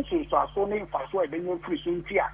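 Speech only: a man talking steadily, his voice thin and cut off at the top as over a telephone line, with a faint steady hum underneath.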